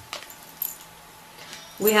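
A few light clicks and a faint metallic jingle as oracle cards are handled by a hand wearing bangle bracelets. A woman begins speaking near the end.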